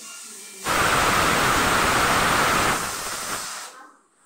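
New Shivam pressure cooker on a gas burner letting off its whistle: a loud jet of hissing steam starts sharply about half a second in, holds for nearly three seconds, then dies away. It is a test whistle, showing whether the new cooker builds pressure and whistles properly.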